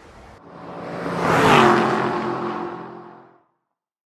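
Faint room tone cuts off, then an outro whoosh sound effect swells to a peak about a second and a half in and fades out, with a low humming tone sounding under it.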